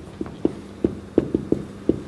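Marker writing on a whiteboard: a run of short, light, irregular taps and knocks as the pen strokes and lifts.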